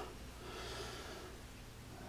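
Quiet room tone: a faint steady low mains hum with soft hiss.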